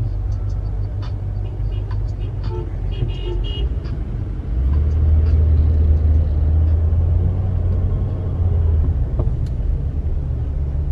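Low rumble of a car's engine heard inside the cabin while moving through slow traffic, getting louder about halfway through. A short, high horn toot from another vehicle sounds about three seconds in.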